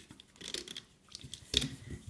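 Rubber loom bands rubbing and snapping off plastic loom pegs and a metal crochet hook as a band charm is pulled free, a scatter of small clicks and rustles, loudest about one and a half seconds in.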